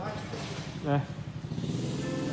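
A single short spoken word about a second in, over a steady low hum.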